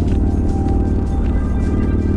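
Music playing, with a motorcycle engine running steadily underneath.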